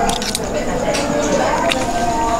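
Close-up eating sounds: wet chewing of a mouthful of rice and a few sharp clicks of a metal spoon scooping from a leaf-lined plate. These run under background music with a sung melody.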